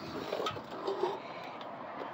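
Quiet outdoor background noise with no distinct sound event, only a few faint indistinct sounds in the first second.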